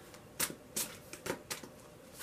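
A tarot deck shuffled overhand by hand, about four soft card slaps and riffles at uneven intervals.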